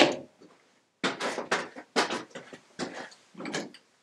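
Workshop tools and wood being handled on a bench: a run of irregular knocks and clatters, starting about a second in.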